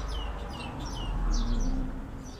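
Small birds chirping in the background, short falling chirps about three or four a second, over a steady low hum.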